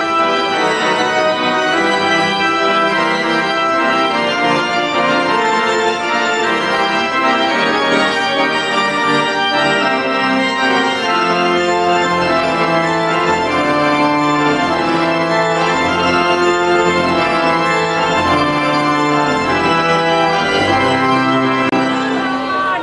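Organ playing a slow piece in long held chords, with deep bass notes coming in about halfway through.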